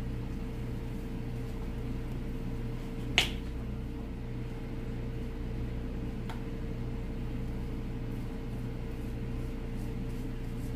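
Plastic flip-top cap on a squeeze bottle of colour shampoo snapping open with one sharp click about three seconds in. A fainter click follows around six seconds in, over a steady low hum.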